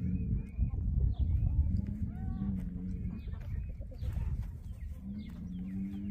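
Chickens clucking in a loose flock, many short calls overlapping. Near the end, a low, drawn-out moo from cattle begins.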